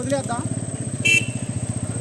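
A small engine idling close by, a low, even putter with no change in speed. A brief high sound cuts in about a second in.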